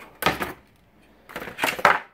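A cardboard box and its packaging being handled and tipped, with two short spells of rustling and light knocking about a second apart.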